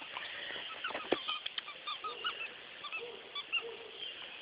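A dog's plush squeaky chew toy squeaking in a rapid run of short, pitched squeaks as the dog bites it, starting about a second in. A single sharp knock comes just before the squeaks begin.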